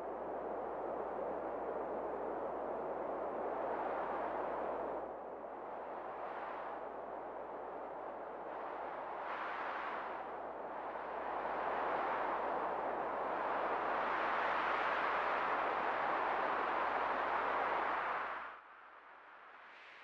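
Sea-wave sound effect: a steady rushing of surf that fades in, swells and eases in slow surges, and cuts off abruptly near the end.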